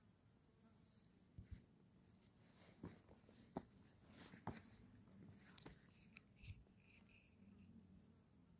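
Near silence, broken by a few faint, scattered clicks and knocks.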